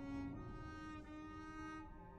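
Quiet background music of slow, held bowed-string notes.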